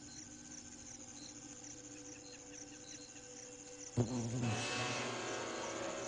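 Faint high insect chirps repeat over a quiet background; about four seconds in, a sudden louder fly buzz starts as the botfly seizes a housefly in a struggle.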